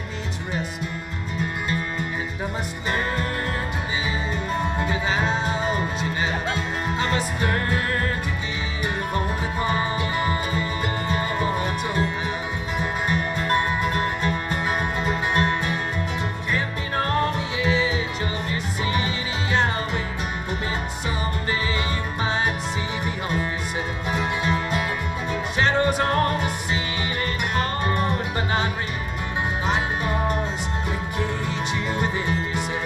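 Acoustic bluegrass band playing live: guitars, mandolin, banjo and dobro over a steady upright bass line.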